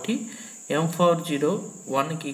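Speech, a voice explaining a maths problem, with a steady high-pitched tone running underneath.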